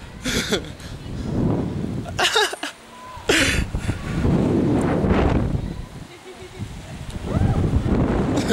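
Wind buffeting the microphone in a low rumble as the jumper swings on the rope, broken by a few short breathy laughs.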